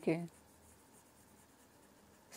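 A woman's voice ends a short syllable at the start, then faint scratching of a stylus writing on a tablet over near silence.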